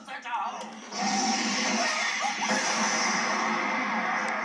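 Anime soundtrack played from a TV: a character's voice, then about a second in a loud steady rushing sound effect that starts suddenly, with music and voice under it.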